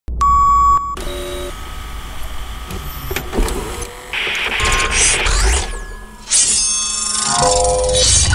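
Sound-designed logo intro with retro TV and video-recorder effects: a short steady test-tone beep, then clicks and mechanical whirring, a burst of static hiss about four seconds in, and layered sustained tones swelling near the end.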